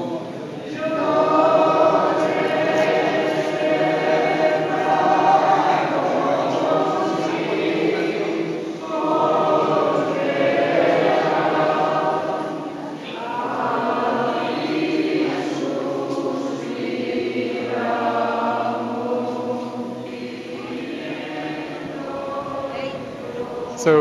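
A group of people singing together as a choir, a sacred song carried in long phrases with short pauses between them, in a stone church crypt.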